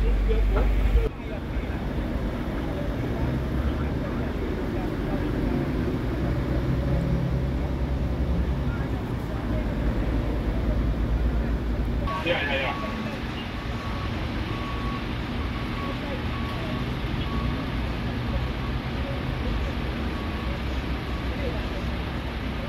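Steady outdoor rumble of idling fire engines and lorries with indistinct voices in the background. After a change about twelve seconds in, a faint repeated beep comes and goes for several seconds.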